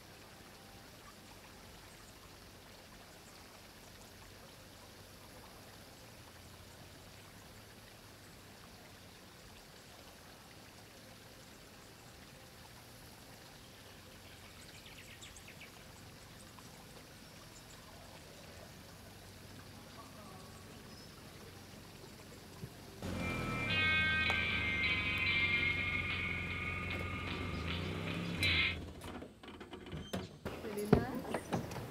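Faint, steady lakeside ambience with gentle water sounds. About 23 seconds in, music with sustained high tones comes in abruptly and much louder, then cuts off suddenly about five seconds later.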